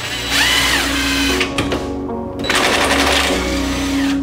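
Background music, with a cordless impact wrench rattling in two bursts as it works the transmission bolts.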